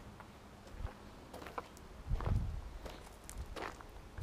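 Footsteps and camera-handling noise: scattered light clicks and a few soft thuds, the heaviest about halfway through. The engine is not running.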